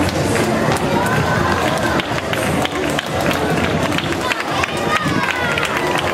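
Spectators' voices and calls along the street mixed with the running footsteps of race runners on asphalt, all loud and continuous.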